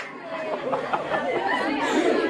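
Indistinct chatter of several overlapping voices, with no clear words.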